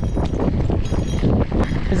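Wind buffeting the microphone with a heavy low rumble, over the irregular crunch of wide gravel-bike tyres rolling on a loose gravel road.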